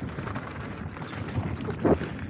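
Mountain bike rolling fast down a dry dirt singletrack: tyres on dirt and dry leaves with wind buffeting the camera's microphone, and a single sharp knock from the bike near the end.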